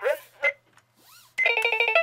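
The VTech Sesame Street Super Animated Talking Computer toy gives a loud, rapidly pulsing electronic tone with a buzzy, warbling edge over the last half second, after the word "sheep" is spoken.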